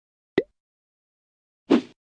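Two short sound effects of an animated logo transition: a quick pop about half a second in, then dead silence, then a brief burst near the end.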